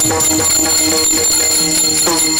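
Many pairs of small bronze hand cymbals (taal) clashed rapidly together, giving a steady high bell-like ring, with drum strokes underneath while the singing pauses.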